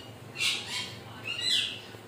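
A bird calling twice: two short, high-pitched squawky calls about a second apart.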